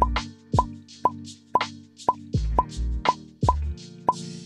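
Short popping sound effects, one roughly every half second, over soft background music with sustained low chords. The pops mark the on-screen grades appearing one after another.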